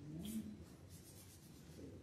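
Faint rustling and shuffling of people moving about a quiet church, with a brief low murmur of a voice in the first half second.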